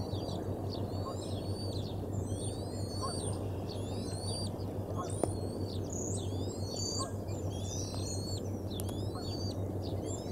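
High-pitched bird calls repeated about once or twice a second, each a quick upward flick then a falling sweep, over a steady low hum.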